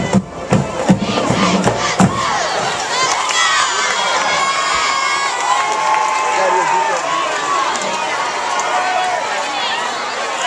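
Crowd of many high-pitched young voices cheering and shouting at a high school football game, after a few loud beats in the first two seconds.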